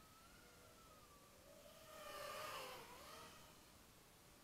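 Faint whine of an X210 FPV racing quadcopter's motors, the pitch wavering as the throttle changes. It swells louder as the quad passes close about two seconds in, the pitch dipping as it goes by, then fades again.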